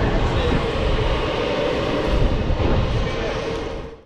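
Outdoor background noise with a dense low rumble and a steady hum, with faint voices of people talking in the background; it fades out at the very end.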